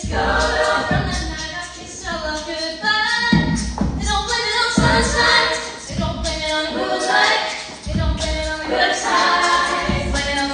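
Female a cappella group singing live: a lead vocalist on a microphone over the group's backing harmonies, with no instruments.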